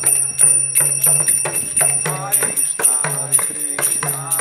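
Street harinama kirtan: voices chanting over small hand cymbals struck in a fast, even rhythm that rings out high, with a mridanga drum.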